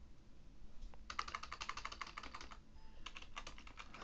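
Faint computer keyboard typing: a quick run of keystrokes starting about a second in, a short pause, then a few more keystrokes.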